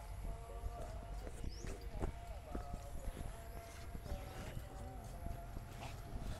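Footsteps on stone paving: irregular light clicks and taps over a low background rumble, with faint voices in the background.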